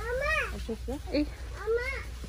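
A young child's high-pitched voice making several short calls that rise and fall in pitch, without clear words.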